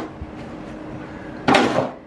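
A snow shovel scooping into packed snow, one short scrape about a second and a half in, over a faint steady hiss.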